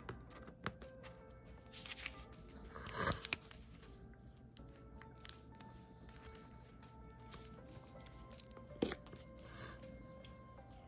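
Paper washi tape and a paper sticker being peeled and pressed down by hand: a few short papery tearing rustles, the loudest about three seconds in, and a sharp click near the end, over faint background music.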